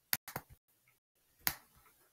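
Computer mouse clicking: a quick run of three or four sharp clicks right at the start, then a single louder click about a second and a half in.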